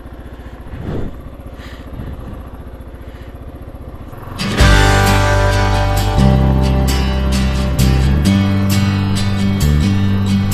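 Kawasaki KLR 650's single-cylinder engine running steadily; about four and a half seconds in, loud acoustic guitar music with strumming cuts in suddenly and covers it.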